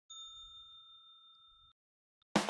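A single bell-like ding, struck once, that rings on and fades for about a second and a half before cutting off.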